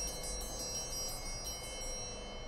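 Altar chimes ringing after the consecration of the chalice, several high bell-like tones held together and fading away near the end.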